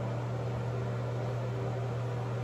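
Steady background hum with an even hiss and no other sounds.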